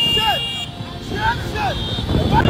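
Many motorcycles running in a dense procession, with voices shouting over them. A steady high tone sounds at the start and stops about two thirds of a second in.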